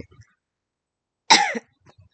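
A woman coughs once, a short loud cough past the middle, with near silence around it.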